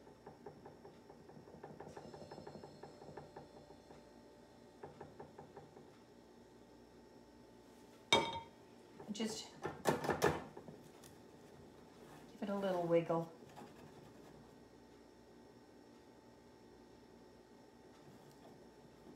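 Soft, quick scraping strokes of a spatula spreading lime tart filling in a tart pan, then a few sharp clicks and knocks as the metal pan is handled on a wire cooling rack. About 12 seconds in, a brief wordless murmur falls in pitch.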